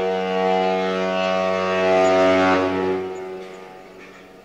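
Ship's horn sound effect, one long steady blast that signals the ship's departure. It fades away about three seconds in.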